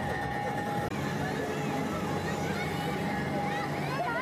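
People's voices and chatter over a steady hum, with a thin held tone running under them.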